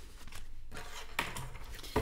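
Faint rustle and light taps of a tarot deck being spread and gathered up on a wooden table.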